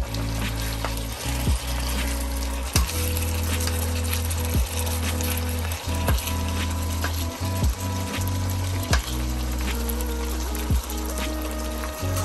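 Pieces of duck sizzling in a pan while a metal spoon stirs them, with short knocks and scrapes against the pan every second or so. Background music with sustained low notes plays underneath.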